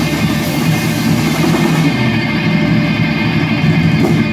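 A live rock band playing: electric guitar, keyboard and drum kit together in a full, continuous sound. The high top of the sound thins out about halfway through.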